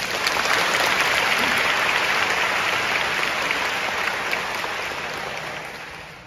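Concert-hall audience applauding. It starts abruptly and fades gradually toward the end.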